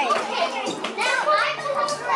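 Children's high voices talking and calling out at play.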